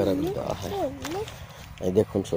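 A young child's voice making drawn-out vocal sounds that swoop down and up in pitch, not words, for a little over a second, followed by a short burst of voice near the end.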